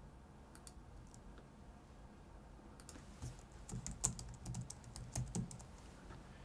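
Faint typing on a computer keyboard: a few scattered key clicks, then a quicker run of clicks from about halfway through.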